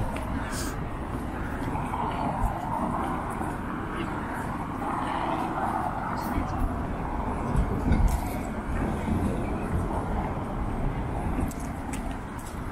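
City street ambience: road traffic passing, with the surging tyre and engine sound of cars going by, and voices of passers-by close to the microphone.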